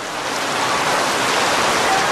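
A steady rushing noise of water that swells over about the first second and then holds.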